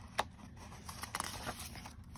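A page of a paper picture book being turned by hand: a sharp paper click just after the start, then soft rustles and flicks as the page settles.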